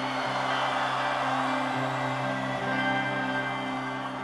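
Rock band music: sustained, layered guitar notes ringing over low bass notes that change every second or so.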